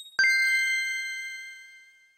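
A single bell-like chime struck once, about a fifth of a second in, ringing with several overtones and fading away over about two seconds.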